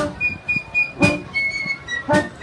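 Concert band playing: flutes hold high notes over accented band chords, with a sharp percussion hit at the start and another about a second in.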